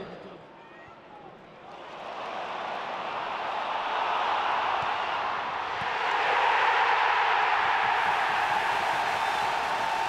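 Large football stadium crowd, quiet for a moment, then swelling from about two seconds in into a loud sustained roar of cheering that peaks just past the middle: the cheer of a home goal being scored.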